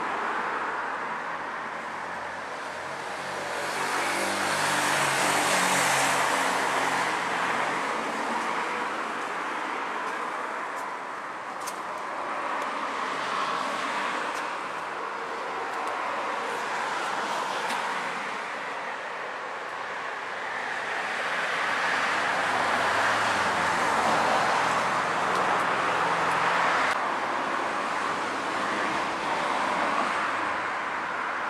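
Street traffic noise: a steady road hum, with vehicles passing and swelling louder about five seconds in and again from about twenty-two to twenty-seven seconds.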